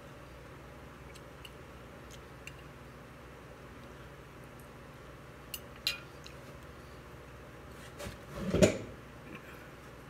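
Fork and cutlery on a ceramic dinner plate: a few faint clicks, two sharper clinks about five and a half to six seconds in, then a louder clatter about eight and a half seconds in.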